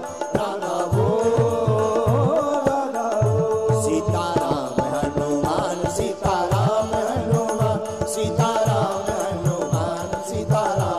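A male voice singing a Hindi devotional bhajan with held, gliding notes, over a drum keeping a steady beat of about four strokes a second.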